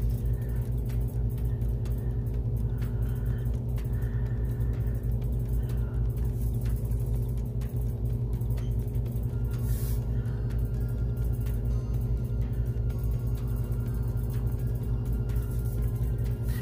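A steady low hum with a constant drone, with faint scratching of a fine-tip ink pen on paper.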